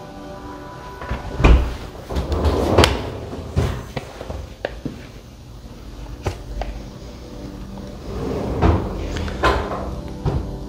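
A series of knocks and low thuds from a stainless-steel Thermador refrigerator's door and freezer drawer being opened and shut, spread over several seconds. Background music runs underneath.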